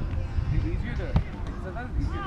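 A single sharp hit on a beach volleyball about a second in, over a steady low wind rumble on the microphone, with players' short calls across the court.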